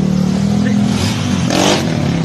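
Honda Beat scooter engine revved through a loud open exhaust. It holds a steady low drone, then breaks into a harsher burst about one and a half seconds in.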